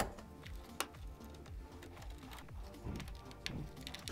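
Faint clicks and taps of hardware being handled as the SSD tray is fitted into the TV box's case, one near the start and a small cluster near the end. Quiet background music underneath.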